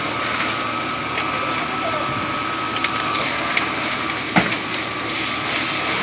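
Fire in burning garages: a steady rushing noise with a faint constant whine under it, and a few sharp cracks, the loudest about four and a half seconds in.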